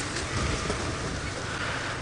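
Open safari vehicle driving slowly off-road through dry grass: the engine runs under a steady rushing hiss.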